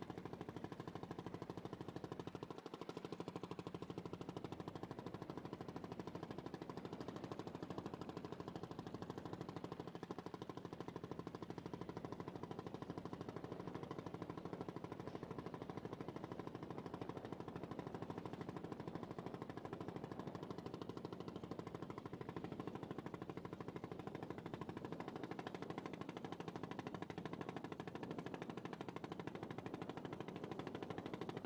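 A boat engine running steadily, a low drone with a rapid, even beat that does not change.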